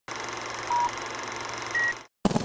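Film-countdown-leader sound effect: a steady hiss of old-film noise with two short beeps, a lower one just under a second in and a higher one near the end.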